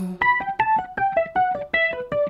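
Guitar playing a quick run of single plucked notes, about seven a second, mostly stepping downward in pitch: an instrumental fill with no voice.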